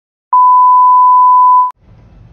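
A steady 1 kHz test tone of the kind that goes with colour bars, sounding for about a second and a half and cutting off sharply. A low rumble of car noise comes in just after it.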